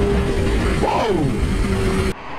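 Wind rush over a helmet camera with a motorcycle engine holding a steady drone at highway cruising speed. About a second in, a short sound rises and then falls in pitch over the rush.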